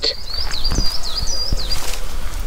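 A small songbird singing one thin, high, warbling phrase lasting nearly two seconds.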